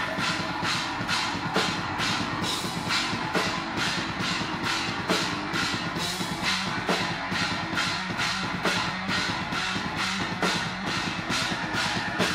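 Live progressive metalcore band playing: the drum kit hits steadily about twice a second over a held low guitar and bass note.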